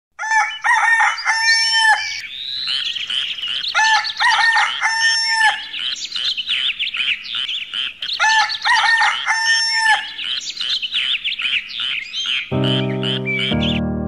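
A rooster crowing three times, about four seconds apart: a few short notes and then one longer held note. Steady high bird chirping runs underneath, and piano music comes in near the end.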